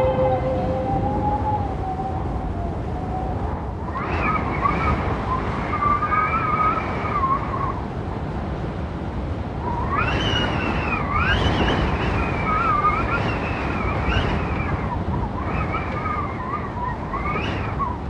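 A steady rushing noise with long, wavering wails that glide up and down over it. They come in two stretches, starting about four seconds in and again about ten seconds in, as the song's music ends.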